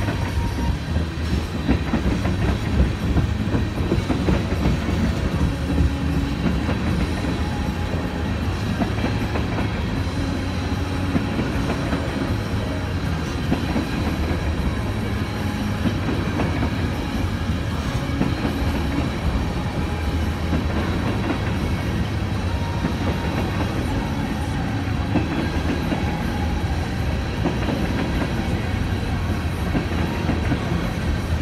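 Freight train of tank cars and lumber-loaded flatcars rolling past at steady speed, its wheels rumbling continuously on the rails.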